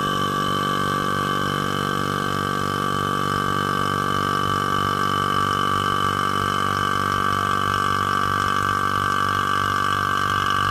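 Vacuum pump running steadily to evacuate a glass bell jar: a constant motor hum with a steady high whine over it.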